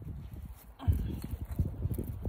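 Husky puppy panting hard after a jog.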